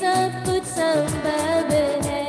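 A woman singing a Hindi worship song into a microphone, with held, wavering notes. She is accompanied by an electronic keyboard playing bass notes and a steady drum beat whose low strokes fall in pitch.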